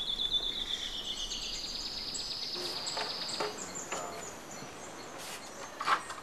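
Forest insects trilling: one steady, finely pulsed high trill, then a second, higher trill from about a second and a half in that stops just past halfway, over faint forest ambience.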